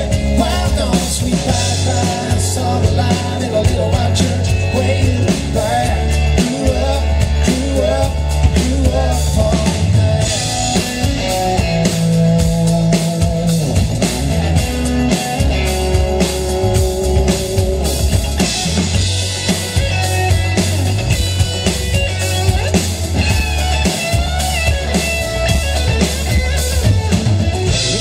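Live country-pop band playing an instrumental stretch of a song: drum kit keeping the beat under strummed acoustic guitars, with an electric guitar taking the lead.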